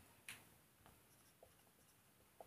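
Faint felt-tip marker on a whiteboard: a short scrape a quarter second in, then a few light ticks as the marker starts writing.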